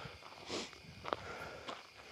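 A quiet pause with a soft, short breath about a quarter of the way in, then a single faint click a little past halfway.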